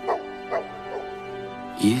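A dog giving three short yips or barks over soft background music.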